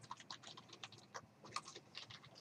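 Computer keyboard typing: a quick run of faint keystrokes, about six a second, typing out a word.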